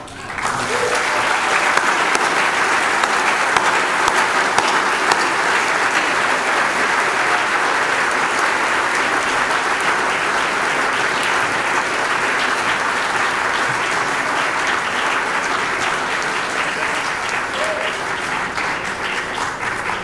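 An audience applauding steadily, dying away near the end.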